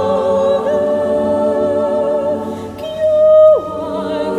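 A mixed chamber choir sings a sustained chord with a slight vibrato. About three seconds in, one voice rises above the rest on a louder held note, then slides steeply down in pitch.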